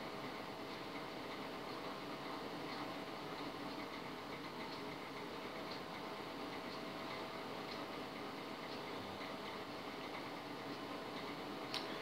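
Samsung microwave oven running on full power: a steady hum with one faint constant tone and a few faint ticks.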